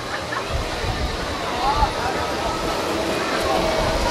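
Open-air background: a steady hum of outdoor noise with a low rumble, and faint snatches of other people's voices in the distance, about halfway through and again near the end.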